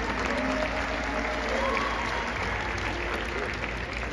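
Audience applauding: steady clapping that eases off slightly toward the end.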